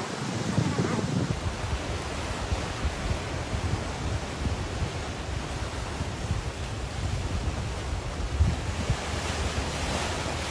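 Sea surf washing against a rocky coastal cliff, a steady rushing noise, with wind gusting on the microphone as an uneven low rumble.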